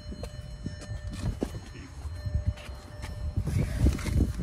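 A few scattered light knocks and shuffling, with a low rumble, as a man climbs into a car's driver seat.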